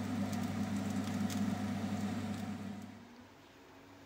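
A hob and a frying pan give a steady low electric hum with a faint hiss and light crackle as parchment-wrapped fish parcels cook in the dry pan. The sound stops about three seconds in.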